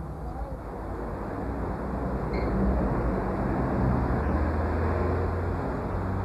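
A steady low rumble that grows louder over the first few seconds and then holds, with one faint tick near the middle.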